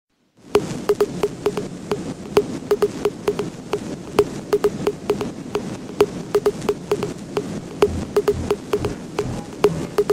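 Background music made of rapid, uneven clicking percussion, each click with a short pitched ring. A low beat joins near the end.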